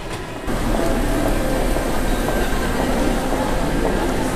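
A loud, steady rumbling roar from the film's sound design, carrying faint steady tones. It steps up in level about half a second in and then holds.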